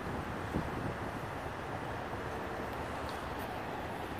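Steady outdoor background noise, a low rumble with no distinct events.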